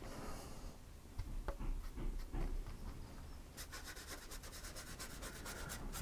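Faint scratchy rubbing of a watercolour brush stroking wet paint across paper, with a few scattered strokes at first and then a run of quick strokes in the second half.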